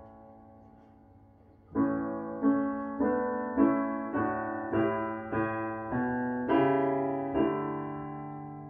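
Roland digital piano playing a four-part hymn setting in block chords. A held chord fades for almost two seconds, then the next phrase begins with a new chord struck roughly every half second.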